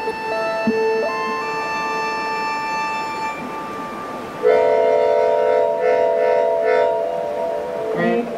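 Hammond 44 PRO keyboard harmonica (melodion) holding reedy chords, its notes changing one at a time. About halfway through, a louder, fuller chord comes in with a wavering shimmer in its upper notes.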